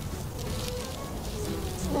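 A child's muffled, closed-mouth humming and straining while she grips a spatula in her teeth to spread icing, over faint background music; a clearer 'mm' starts just before the end.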